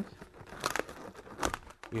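Inflated latex twisting balloons being bent into a curve by hand, rubbing against each other and the fingers: a faint rubbery scuffing with a couple of brief scrapes, one about two-thirds of a second in and one about halfway through.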